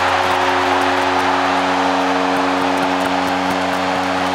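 Arena goal horn sounding one steady, unbroken chord over a loudly cheering crowd, the signal of a home-team goal.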